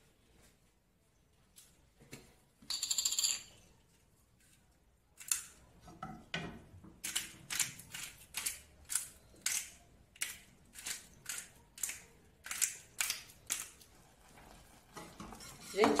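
Peppercorn grinder being twisted over a saucepan to grind black pepper: a brief rasp about three seconds in, then a run of crisp crunching clicks, about two or three a second, for around nine seconds.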